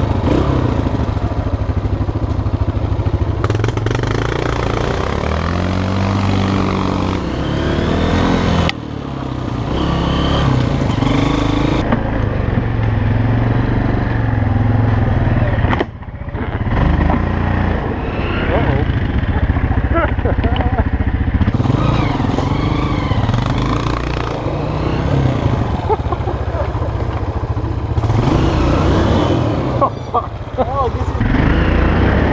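Off-road engines running at low revs: a Honda CRF230F dirt bike's single-cylinder four-stroke and a Yamaha Grizzly quad bike, the pitch rising and falling as they work along a trail. The sound changes abruptly about 9 and 16 seconds in.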